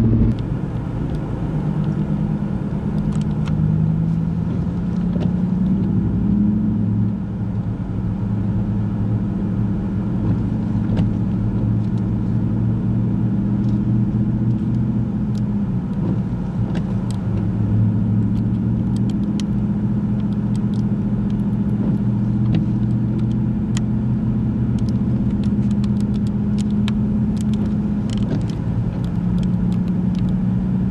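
A car engine running with a steady low hum, its pitch drifting slowly up and down as the revs change, heard from inside the vehicle's cabin. A few faint clicks are scattered through it.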